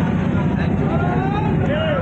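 A river passenger launch's engine running with a steady low drone, with people's voices talking over it.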